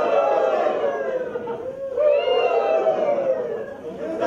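Drawn-out, high-pitched voices in two long stretches that rise and fall in pitch. The second stretch starts about halfway through.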